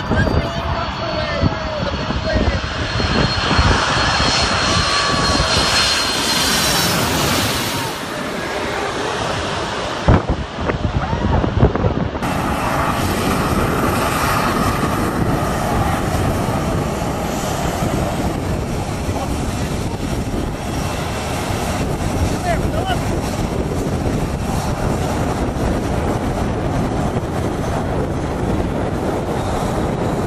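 Jet airliner passing low overhead, its engine noise swelling to a loud peak and fading. Then a twin-engine jetliner's engines run steadily at high power for takeoff, blasting the people at the fence behind it.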